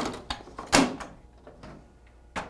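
Plastic knocks and clicks from a Xerox WorkCentre 7800 copier as a waste toner container is slid into place and the front door is shut. The loudest knock comes a little under a second in, followed by lighter clicks.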